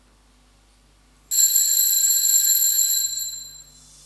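Altar bell rung once at the elevation of the consecrated chalice: a sudden bright, high ring about a second in, held for about two seconds and then fading away.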